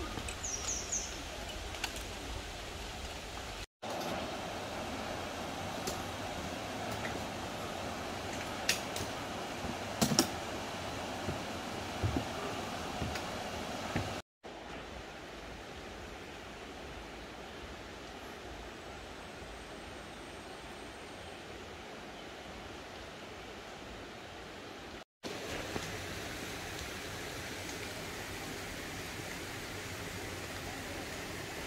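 Steady rushing of a mountain stream over rocks, a continuous even noise with a few faint clicks. The sound drops out briefly three times and comes back at a slightly different level, quieter in the middle stretch.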